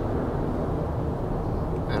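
Steady in-cabin road and engine noise of a 2016 Ford Mustang EcoBoost's turbocharged four-cylinder at highway cruise, held near 2000 RPM.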